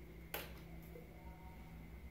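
A single sharp click from handling, about a third of a second in, over a faint steady low hum.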